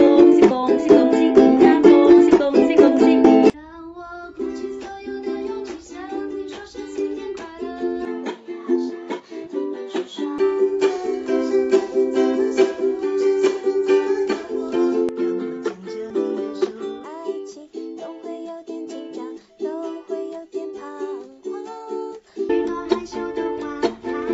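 Ukulele strummed as accompaniment to a woman singing a Chinese New Year song in Mandarin. The sound drops abruptly about three and a half seconds in and jumps back up near the end, as the recording switches from one singer and ukulele to the next.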